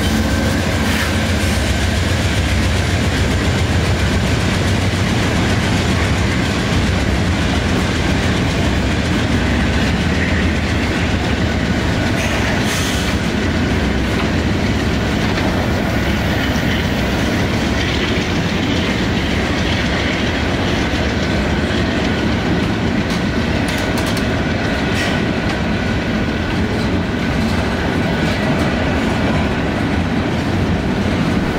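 Norfolk Southern freight train rolling slowly past at restricted speed: the diesel locomotive's engine at the start, then a long string of open-top gondola cars with their wheels clicking steadily over the rail joints.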